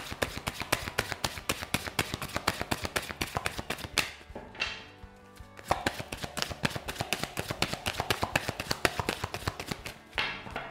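A deck of tarot cards being shuffled by hand, overhand, in a quick run of soft card-on-card taps about ten a second, which breaks off briefly about four seconds in and then resumes.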